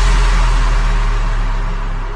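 Electronic dance music: a long, very deep bass note under a wash of noise, left to fade away after a final hit, with no beat.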